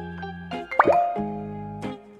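Background children's music with held notes, and a quick rising pop sound effect about a second in, like a cartoon bloop.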